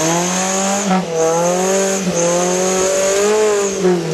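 Off-road 4x4's engine revving hard and held at high revs under load as it climbs a steep dirt trail, the pitch wavering with short dips about one and two seconds in, then dropping off near the end.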